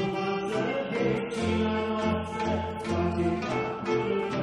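A Romanian folk orchestra playing, its violin section carrying the tune over a pulsing low bass line.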